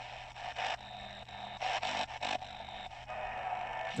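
Shortwave static and hiss from the XHDATA D-368 radio's speaker as it is tuned across the band with its telescopic antenna retracted, with a few short bursts and a thin whine of weak signals passing as the dial moves.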